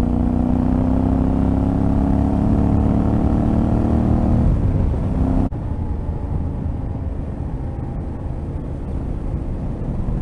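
Yamaha Ténéré 700's parallel-twin engine running on the road, its note climbing slowly for about four seconds and then dropping away. After a sudden break about halfway through, the engine sounds quieter under wind and road noise.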